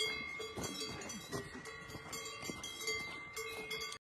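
Cowbells on grazing cows clanking at uneven intervals, each strike ringing on in a steady tone.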